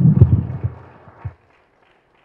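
Handling noise from a handheld microphone: low thumps and rustling as it is lowered and set down, loudest at the start and dying away, then the sound cuts to dead silence about a second and a half in.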